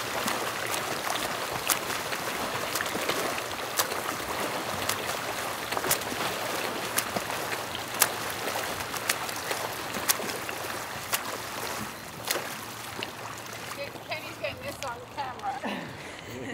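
Swimmers splashing through freestyle laps in a pool: a steady wash of churning water, with sharp slaps of arms hitting the surface every second or two. The splashing fades near the end and voices come in.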